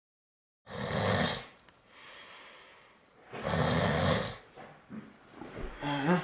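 A man snoring: two long, loud snores about two and a half seconds apart, the first starting about a second in, with a softer breath between them.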